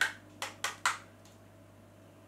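Knuckles rapping about four times on the hollow plastic housing of a pocket LED video light, sharp light knocks within the first second, the first the loudest, that show the body is all plastic.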